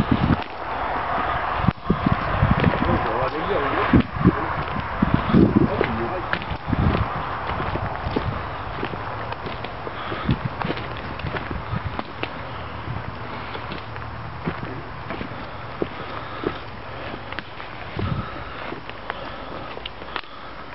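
Footsteps tramping through woodland undergrowth and leaf litter, with irregular crunches and snaps of twigs, over indistinct low voices.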